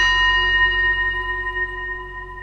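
A single struck bell-like tone ringing out, several steady pitches slowly fading, over a low steady synth drone in an electronic track.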